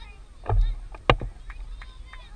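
Outdoor soccer-field ambience: faint distant voices of players and spectators calling, with low rumbling on the microphone and two louder thumps about a second in.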